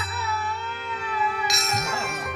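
Live Bengali devotional kirtan music: a held, wavering melodic line over a steady drone, with a bright metallic strike about one and a half seconds in and a low drum beat just after.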